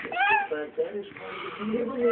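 Baby's short high squeal, rising then falling in pitch, just after the start, followed by a man's low voice.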